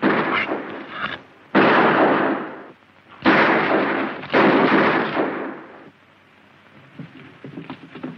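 Four loud gunshots, each cracking sharply and then dying away in a long echo over about a second, spaced a second or so apart. They are followed by a quieter stretch.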